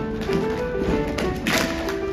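Grand piano playing a bouncy accompaniment passage for a choral song between sung lines, with sharp percussive taps in the texture and a louder hit about one and a half seconds in.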